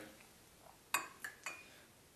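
Small glass test vial knocking lightly against a glass tumbler as it is dipped in and filled with water: three short clinks about a second in, close together.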